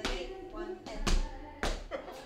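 Dancers' footfalls on a hardwood floor during Lindy Hop footwork: four steps about half a second apart, the third the loudest.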